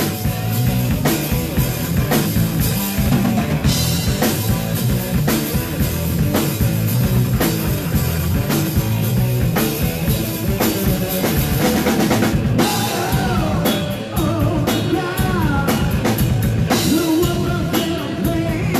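Live heavy metal band playing an instrumental passage: a drum kit hitting kick and snare steadily under an electric guitar, with no vocals. A lead line bends up and down in pitch in the last few seconds.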